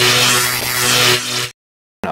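Tail of a produced intro sting: a sustained low tone with overtones under a hiss, fading and then cutting off abruptly about one and a half seconds in, followed by dead silence.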